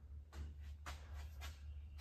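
Quiet indoor room tone: a low steady hum with a few faint, soft rustles.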